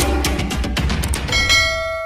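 Background music with a drum beat that stops about a second and a half in. It gives way to a single struck bell chime, the notification-bell sound effect of a subscribe animation, which rings on and slowly fades.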